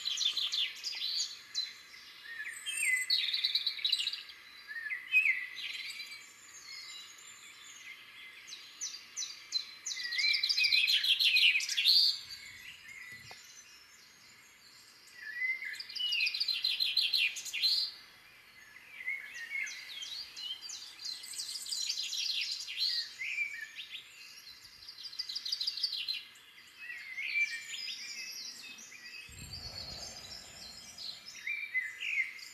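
Recorded dawn chorus of morning birdsong: several songbirds singing and chirping over one another in bursts of high trills and phrases, with quieter gaps between, over a faint steady hiss.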